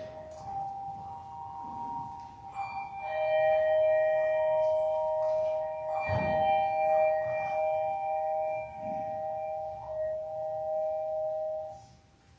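Pipe organ playing soft held chords, several steady notes sounding together and changing about three seconds in and again about six seconds in, then cutting off just before the end.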